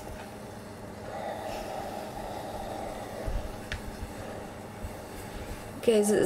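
Steam iron being worked over a pressing cloth on a viscose crochet motif: a steady, low rubbing and steaming noise that eases off near the end.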